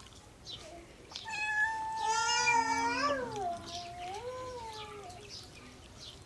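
An animal calling twice. A long call begins about a second in, rising and then dropping sharply in pitch, and a softer, shorter call follows.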